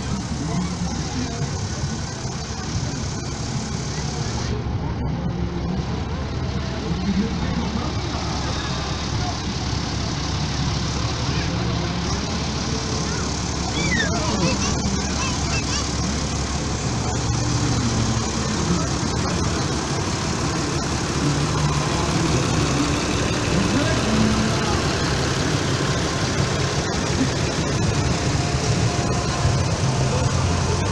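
Massey Ferguson tractor's diesel engine running steadily at a slow parade crawl as it tows a float past, growing somewhat louder toward the end, with voices of people around it.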